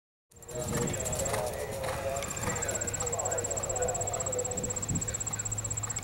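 Horse cantering on sand arena footing, with faint hoofbeats under indistinct background voices. A steady, high, rapidly pulsing tone runs underneath. The sound starts just after a moment of silence at the cut.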